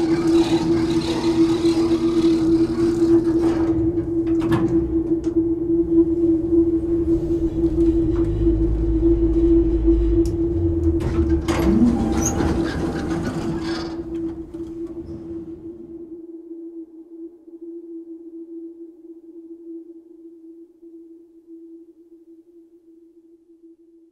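Closing of an electronic soundtrack: a sustained drone on one steady tone under a dense layer of rumbling, hissing sound effects with a few sharp clicks. The effects cut off suddenly about two-thirds of the way through, leaving the drone alone, fading away.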